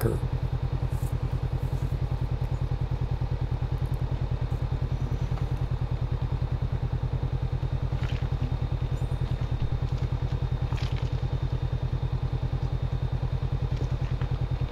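A motorcycle engine idling steadily with an even, rapid low pulse while the bike stands parked.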